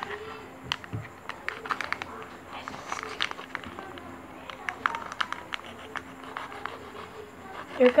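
Plastic sachet of Ariel Power Gel detergent crinkling and crackling in a run of short, sharp clicks as it is gripped and worked by hand to tear it open.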